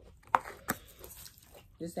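Close-up eating and food-handling sounds at a table of chicken wings: two sharp clicks or smacks about a third of a second apart, the first the loudest. A voice starts near the end.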